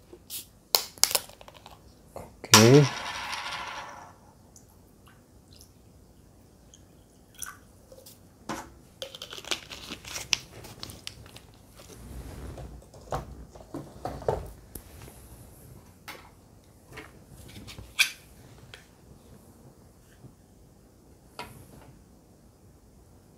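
Plastic water bottle being handled: scattered clicks, knocks and crinkles as the cap is twisted and the bottle is moved and set down on the table. A brief voice sound comes about three seconds in.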